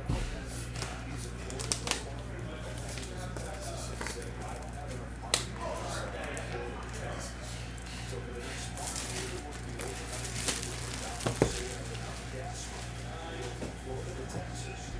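Hands handling and opening a sealed cardboard box of trading cards: a few sharp clicks and light rustles of cardboard and packaging. Quiet background music and a steady low hum run underneath.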